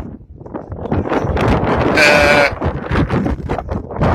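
Wind buffeting the microphone, with a short, high-pitched shout from a person about two seconds in.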